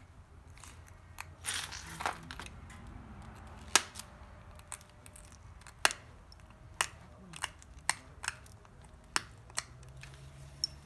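Pressure flaking obsidian with a copper-tipped flaker: sharp, separate snaps as small flakes pop off the edge, about eight of them at irregular intervals in the second half. A short rasping noise comes about a second and a half in.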